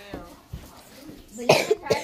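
A person coughing: two harsh coughs close together near the end.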